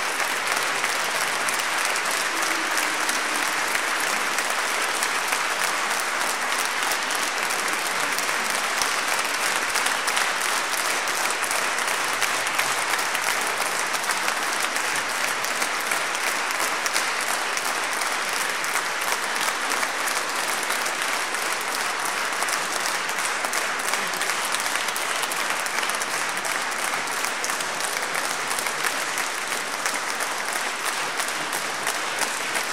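Large audience applauding steadily, many hands clapping together.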